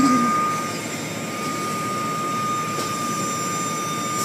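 Automatic car wash equipment running steadily: a rushing noise with a constant high-pitched whine.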